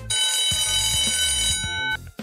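Alarm-clock ringing sound effect, a steady loud ring lasting nearly two seconds, signalling that the quiz countdown has run out. Background music carries on beneath it.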